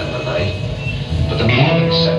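Live rock band with amplified electric guitars playing, heard loud and steady from the crowd in a club.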